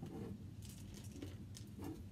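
Faint clicks and soft rustling from small objects being handled, several within two seconds, over a steady low hum.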